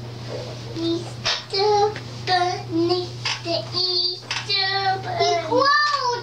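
A young girl singing in a high voice in short sliding phrases, starting about a second in, over a steady low hum.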